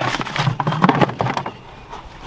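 Paper leaflets and a cardboard box rustling and scraping as they are handled, a dense run of crinkles that dies down about one and a half seconds in.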